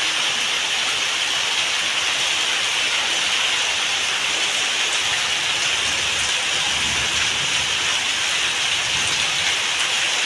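Heavy rain falling steadily on concrete, with a stream of runoff pouring off a roof edge and splashing onto the wet ground.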